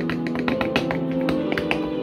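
Dance footwork: hard-soled shoes striking a wooden board in rapid taps, several a second, over music with held chords that change every half second or so.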